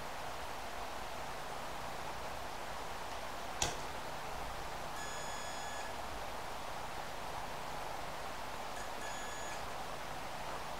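A digital multimeter's continuity buzzer beeps twice, each beep a steady tone just under a second long, as its probes bridge pins 2 and 3 of a washing machine door switch: the beep shows continuity through the bypass short. A single sharp click comes about three and a half seconds in.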